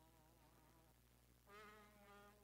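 Very faint singing: long held notes that waver slightly, moving to a new, slightly louder note about a second and a half in.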